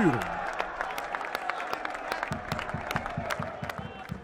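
Football crowd applauding and cheering a goal, with many individual hand claps standing out, slowly dying down toward the end.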